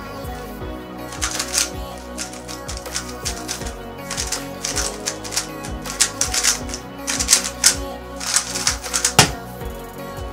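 Rapid plastic clicking and clattering of a MoYu GTS2 M magnetic 3x3 speedcube being turned fast in a timed solve, in runs of quick turns broken by short pauses, over background music. A single sharp knock about nine seconds in.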